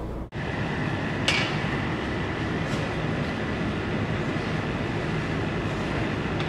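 Steady outdoor background noise: a low, even rumble with a faint, high, steady whine over it and a brief hiss about a second in.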